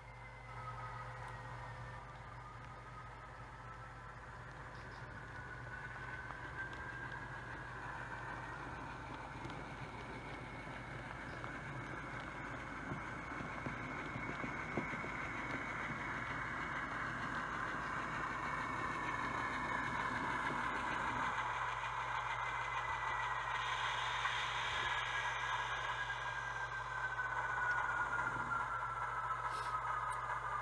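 HO scale model diesel locomotive running toward the camera with its train. Its motor and wheels on the track make a whine that glides up and down in pitch and grows steadily louder as it nears.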